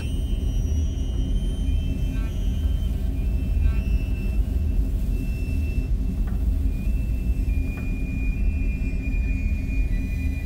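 A steady, deep rumbling drone with a few faint, long-held high tones above it: an ambient underwater soundtrack.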